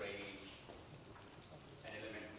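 Chalk tapping and scratching against a blackboard as it is written on, in sharp irregular clicks, with a man's quiet, unclear voice at the start and near the end.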